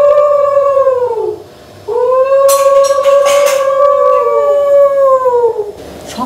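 Conch shell (shankha) blown in two long blasts, each held on one steady note that sags in pitch as the breath runs out. The first blast ends about a second in; the second starts about two seconds in and runs until near the end.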